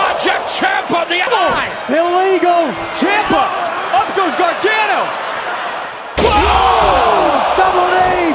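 Wrestlers slamming onto a wrestling ring mat several times, amid shouting voices. A heavy slam about six seconds in is followed by louder, sustained crowd noise.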